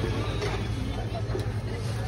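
Steady low engine rumble of street traffic, with people talking in the background and a few light clicks.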